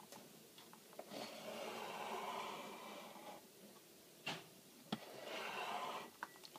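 A sharp Stanley knife blade drawn through leather along a metal ruler: a long scraping cut of about two seconds, two short clicks, then a second, shorter scraping stroke.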